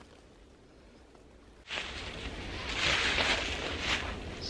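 Faint, near-quiet forest background, then a little under halfway in a sudden, steady rustling of dry leaf litter that continues to the end.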